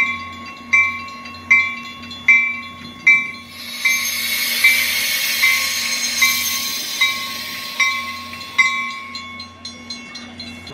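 Metra commuter train arriving, a warning bell ringing steadily about once every three-quarters of a second. From about three and a half seconds in, a loud hiss and rumble rise as the cab car and coaches pass close by, fading near the end while the bell keeps ringing.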